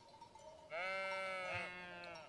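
A single sheep bleat, quiet and drawn out for about a second, starting a little under a second in.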